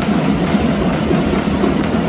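Drumming and music mixed with the noise of a crowd, a steady, dense wash with a repeated low beat.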